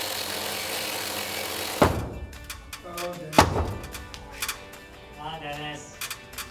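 A Makita chainsaw cutting through a wooden beam, its steady noise stopping abruptly about two seconds in with a heavy thunk, then a second heavy thunk about a second and a half later.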